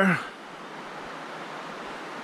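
Steady rushing of a shallow river flowing over rocks, an even noise with no distinct events.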